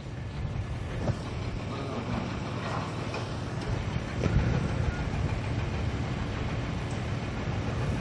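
Open-air field ambience: a steady low rumble and noise haze, with a few faint indistinct sounds.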